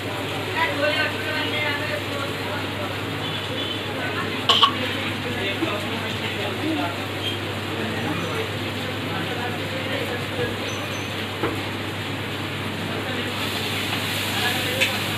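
Masala frying in oil in a wok on a gas stove, a steady sizzle with a metal spatula stirring and scraping the pan. A single sharp tap about four and a half seconds in.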